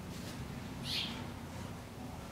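A bird's single short, high call about a second in, over a steady low hum.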